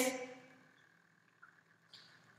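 The last word of a spoken question fades out in the first half second. Near silence follows, broken only by two very faint, brief sounds near the end.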